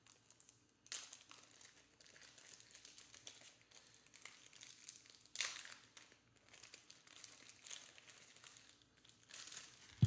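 Faint crinkling and rustling of a soft plastic trading-card sleeve being handled, with brief louder rustles about a second in, around the middle and near the end.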